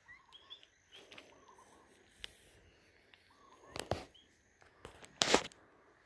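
Faint chirping of small birds in the background, with two brief rustles of footsteps through brush, about four seconds in and again a second and a half later.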